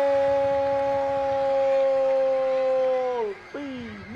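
A voice holding one long, steady note for about three seconds, then dropping in pitch and breaking off.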